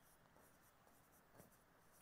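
Near silence: faint strokes of a stylus on an interactive display panel as a line is written, with one slightly louder stroke about a second and a half in.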